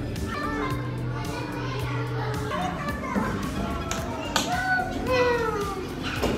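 Busy indoor-playground hubbub: several children's voices and calls over background music in a large play hall. About four seconds in there is a sharp knock, then a loud child's call that falls in pitch.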